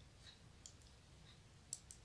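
Faint clicks of knitting needles as a stitch is knitted: a soft tick about two-thirds of a second in and two more close together near the end, otherwise near silence.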